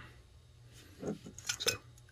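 A few faint clicks and clinks about a second in as a small glass jar packed with gold-tone metal earring posts is lifted off the table, the metal parts shifting against the glass.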